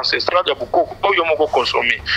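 Speech: a person talking without pause.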